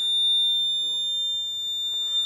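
Electronic buzzer on a transistor water level indicator circuit sounding one steady, unbroken high-pitched tone: the alarm that the water has reached the top level.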